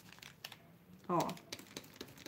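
Faint, scattered light clicks and taps of small craft pieces being handled on a worktable, with one sharper click about half a second in.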